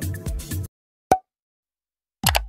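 Background music with a steady beat cuts off suddenly under a second in. After a brief silence comes a single short, pitched pop sound effect of the kind used for an animated like button.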